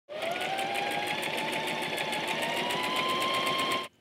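Electric sewing machine running at speed: a motor whine that climbs slowly in pitch, with a fast, even ticking of the needle stroke. It cuts off suddenly just before the end.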